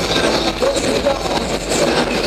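Enduro motorcycle engines running and revving on the track, their pitch rising and falling, the sound echoing through the arena hall.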